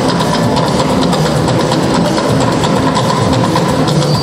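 Loud live band music with drums and heavy bass, played through a PA, dense and steady throughout.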